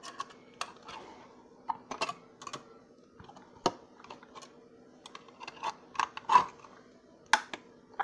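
Irregular clicks, taps and scrapes of a serrated knife levered in the pull ring of a metal soup-can lid, metal knocking on metal, over a faint steady hum.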